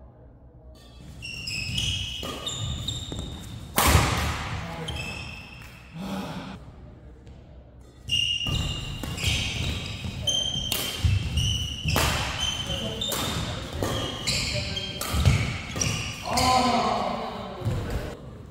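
Badminton doubles rallies: rackets smacking the shuttlecock again and again, with court shoes squeaking on the mat and feet thudding. There is a short lull between two rallies, about six to eight seconds in.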